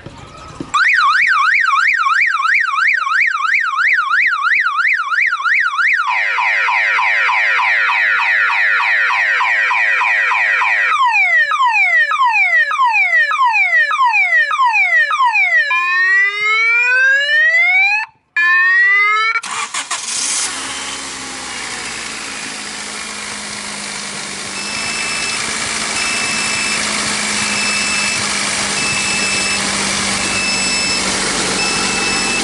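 Car alarm siren cycling through its tones: a fast warble, slower sweeps, falling chirps, then rising whoops, cutting off about 19 seconds in. The 1994 Honda Civic's engine then runs at a steady idle after being jump-started from a dead battery, with faint short beeps repeating about once a second near the end.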